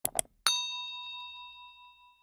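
Two quick clicks, then a single bright bell ding that rings on and fades over about a second and a half: the sound effect of a cursor clicking a notification bell icon.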